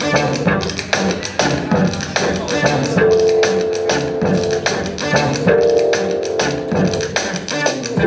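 Improvised electronic music played live on the Beat Jazz controller, a wireless saxophone-fingered controller driving synthesizers: a steady electronic drum beat, with a held synth note about three seconds in and another long synth line from about five and a half seconds.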